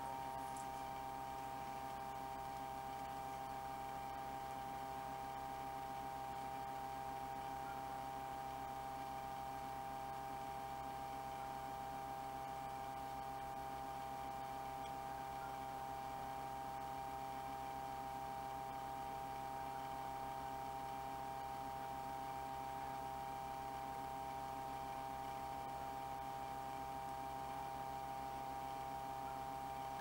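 Steady electrical hum with a higher whine, unchanging throughout.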